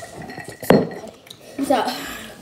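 A single sharp knock about two-thirds of a second in, then a child's voice near the end.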